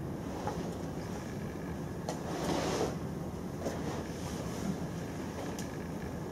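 Steady room hum with a few faint computer-keyboard clicks, and a short rustling rush about two to three seconds in.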